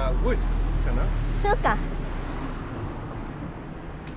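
Street traffic: a low vehicle rumble, loudest in the first two seconds and then fading, with brief snatches of voices.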